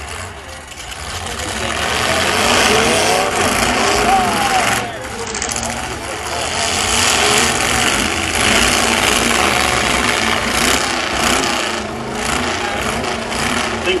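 Demolition-derby pickup trucks' engines running loud and rough under load as two trucks hooked together shove and drag each other. The noise rises about a second in and stays loud.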